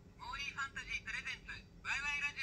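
A talking plush idol doll playing its built-in recorded voice line through a tiny speaker: a thin, tinny voice speaking two short phrases, the second starting near the end.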